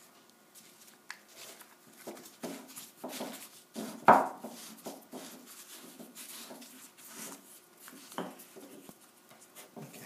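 Newspaper rustling and crinkling in irregular bursts as it is rolled tightly around a wooden paper-pot press, louder for a moment about four seconds in.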